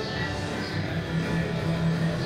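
Music with guitar, playing steadily.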